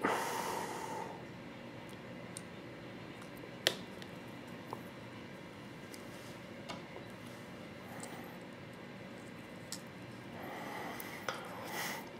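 Hands handling a paintball marker's body and small parts: a brief wiping rustle at the start, one sharp click about four seconds in, then a few faint ticks and a soft rustle near the end.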